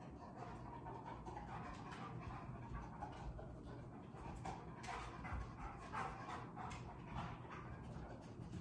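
A dog panting faintly in quick, even breaths.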